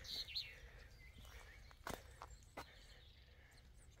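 Quiet outdoor air: a small bird's rapid chirping trails off right at the start, then a few soft footsteps tap on the paving around the middle.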